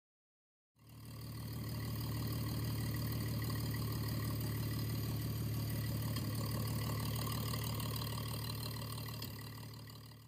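Car engine idling steadily, fading in about a second in and fading out near the end.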